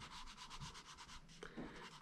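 Graphite stick rubbing across paper in quick back-and-forth shading strokes, faint, as an area of a pencil sketch is worked darker.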